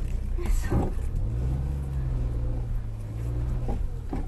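Suzuki Jimny engine running, heard from inside the cab. It revs up a little about a second in, holds there, and eases off near the end.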